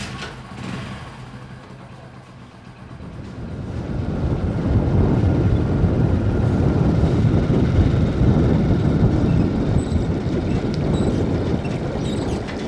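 Steady road and wind noise from a vehicle moving along a paved country lane, building up about three to four seconds in and staying loud.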